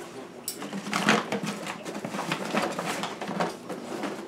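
Paper bag and gloves rustling as dry ice is dug out of a cooler: a string of irregular soft crinkles and small knocks.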